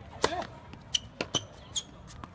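Tennis serve: the racquet strikes the ball hard about a quarter second in, with a short grunt from the server right after. Then come four lighter, sharper pops with a slight ring as the ball bounces and is hit back across the court.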